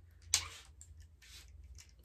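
Stitched linen being unrolled from a tightly wound wooden scroll frame: one short loud rasp of fabric and wood about a third of a second in, then faint clicks as the roller is turned. The piece is wound on very tight, so it is hard to unroll.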